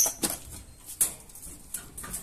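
Scattered clicks, knocks and light rattles from wire-mesh rabbit cages being handled as a rabbit is lifted into one, with a sharp click about a second in.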